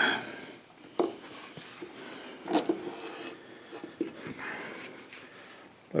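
Faint handling noises as a screwdriver backs out the crane retaining screw from the frame of a Rock Island M200 revolver. There are a few small metal clicks and scrapes, the sharpest about a second in, with a short knock about halfway through.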